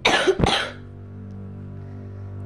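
A person coughing twice in quick succession, about half a second apart. A steady low drone runs underneath.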